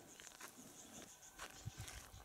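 Near silence: faint outdoor ambience with a few soft ticks in the second half.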